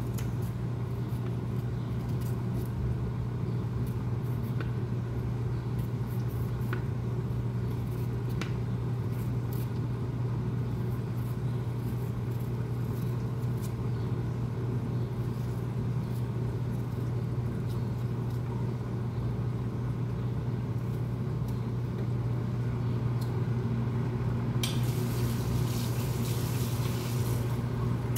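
A steady low hum runs under a few faint clicks of a knife paring a chayote. A hiss comes in near the end.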